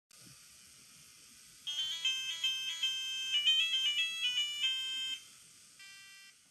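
A micro:bit robot car playing a quick melody of short electronic beeps, starting nearly two seconds in and stopping about a second before the end, followed by one more short beep.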